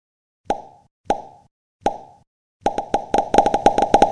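Popping sound effects: three single pops spaced about half a second apart, then a quick run of many pops from about two and a half seconds in.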